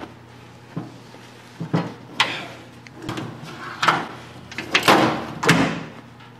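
Steel drawers of a Harbor Freight rolling toolbox cart being slid in and out on their slides, knocking at their stops about six times. The drawers still roll after the cart tipped forward and landed on them.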